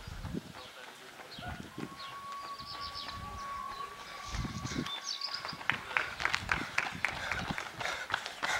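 A runner's shoes striking the asphalt as he approaches, quick even steps about three a second that grow louder over the last few seconds. Before that, a single steady high tone lasts a couple of seconds.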